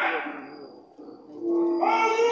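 Stage actors' voices in a theatre hall: a loud line trails off into the hall's echo, a low note is held briefly, and near the end a loud, drawn-out wailing voice begins.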